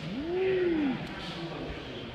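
A man's drawn-out wordless vocal exclamation, an "ooh"-like sound, lasting about a second. Its pitch rises, holds, then falls away. After it there is only quiet room background.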